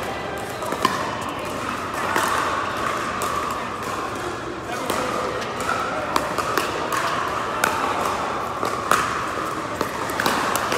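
Pickleball paddles striking a hard plastic ball, sharp pops at irregular intervals from this and neighbouring courts, echoing in a large indoor hall. Indistinct players' voices murmur underneath.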